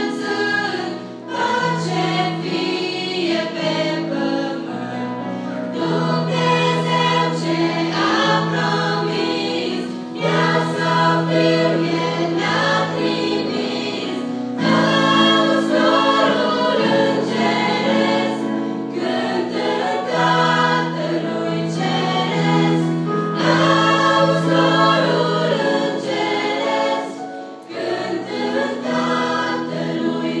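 A church choir of mostly young women singing a hymn in several parts, over held low notes from instrumental accompaniment, with brief breaths between phrases.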